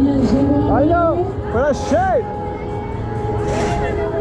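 Fairground ride music playing loudly with a held steady tone. Between about one and two seconds in, voices give several short rising-and-falling whoops, and a low rumble runs underneath.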